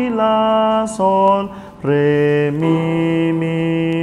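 A man singing a melody in solfège syllables (la, sol, re, then mi, mi), unaccompanied, each syllable held as a sustained note. The last two notes are lower and long.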